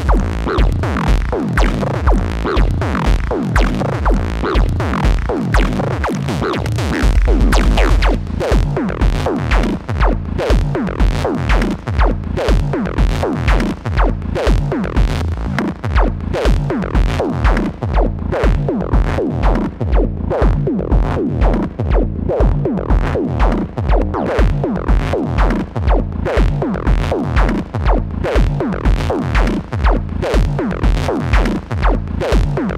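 Eurorack modular synth playing live techno: a percussive bass line from a Noise Engineering Basimilus Iteritas Alter, gated by an Intellijel Steppy sequencer, over a four-on-the-floor kick at about two beats a second. The bass is sidechain-compressed under the kick. About seven seconds in, the low end thickens for about a second.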